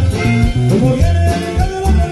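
Norteño band music with electric bass, drums and accordion playing a steady beat.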